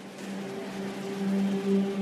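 Tense dramatic soundtrack music: a low held drone, joined by a higher held note about half a second in, slowly swelling.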